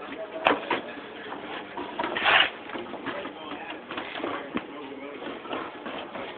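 Faint background talk with handling noises: a sharp click about half a second in and a short rustle a little after two seconds.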